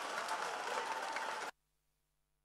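Crowd applause and noise from the stands of a football ground, fairly quiet and steady, cutting off abruptly about one and a half seconds in.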